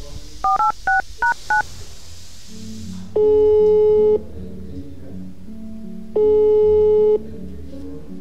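Smartphone keypad tones: five quick dual-tone beeps as a number is dialed. Then the outgoing call's ringing tone sounds twice, each ring about a second long and two seconds apart, over soft background music.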